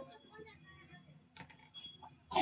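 A few faint, sharp snips of hair-cutting scissors closing on wet hair, coming about one and a half seconds in.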